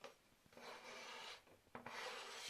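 Kitchen knife blade scraping across a plastic cutting board, sliding chopped vegetables off into a bowl: a light tap, then two scraping strokes, the first about half a second in and the second near the end.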